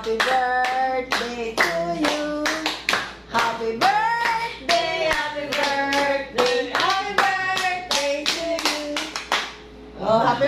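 A small group of voices singing a birthday song, with steady hand-clapping in time, about three claps a second. Clapping and singing stop shortly before the end.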